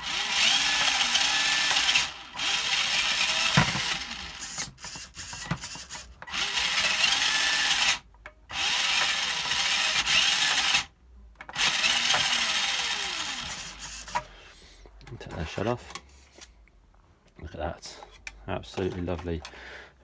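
Tamiya Comical Avante RC buggy's stock electric motor and four-wheel-drive gearbox revving with the wheels spinning free in the air: about six throttle bursts of one to two seconds, the whine rising and falling in pitch, then shorter, quieter blips near the end.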